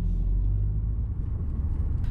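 Steady low rumble of a car driving along a road, heard from inside the car.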